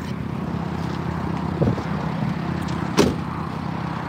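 The small engine of a Daihatsu Hijet kei truck idling steadily, with a sharp knock about three seconds in.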